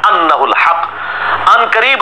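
A man speaking, with a faint steady low hum beneath the voice.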